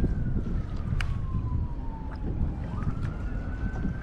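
A siren wailing: one faint tone slowly falls in pitch, then climbs back up about two-thirds of the way through, over steady wind rumble on the microphone.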